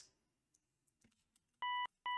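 Near silence with a few faint clicks, then about 1.6 s in a short note from a Serum software synth patch: a sine-wave tone with a few upper harmonics added, held briefly and cut off cleanly.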